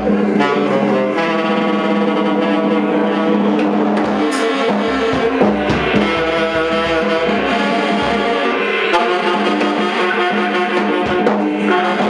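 Tenor saxophone holding long low notes over loose, free-time drumming on snare drum and cymbal, struck with felt mallets and sticks.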